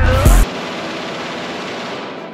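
A rap backing track with a heavy bass ends on a deep bass hit about half a second in, followed by a steady rushing hiss of noise, an edited-in transition effect.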